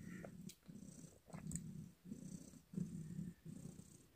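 A calico cat purring close by, the low purr swelling and fading with each breath in short, even pulses.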